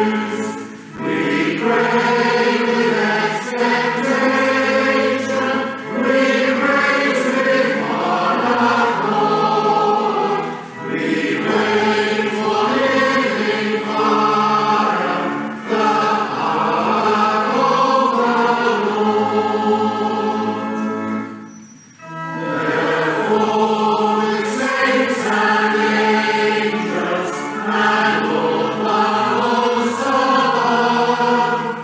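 A congregation singing a hymn in phrases, with short breaks between lines and a longer pause about three-quarters of the way through.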